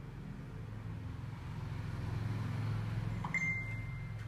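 Low, steady electrical hum that grows louder over the first three seconds. A little after three seconds in, a single high electronic beep starts and holds steady.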